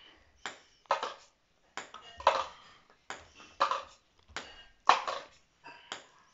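Ping-pong ball bounced repeatedly off the floor and caught in a handheld cup, making a steady series of sharp clicks about every half second to second.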